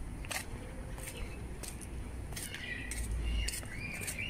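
Quiet outdoor ambience with a low rumble, a few light clicks, and faint high chirps in the second half.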